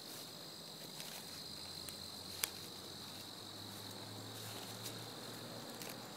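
Steady high-pitched chorus of insects in woodland, holding one pitch throughout, with a single sharp click about two and a half seconds in.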